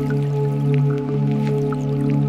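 Ambient music from a Eurorack modular synthesizer (Assimil8or, Arbhar, Nautilus, Data Bender, with reverb). A steady sustained low drone chord plays under scattered short, high plinks.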